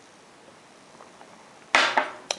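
Quiet room tone with a few faint clicks, then a sudden loud, short burst of sound near the end.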